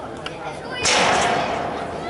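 A single sharp bang about a second in, the loudest sound here, fading out over roughly a second, over spectators' chatter.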